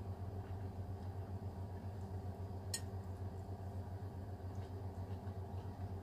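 A steady low hum in a small room, with one short sharp click a little before the middle.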